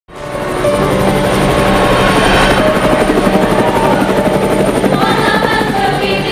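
Helicopter rotor blades chopping in a rapid, steady beat, swelling in quickly at the start, with music playing underneath.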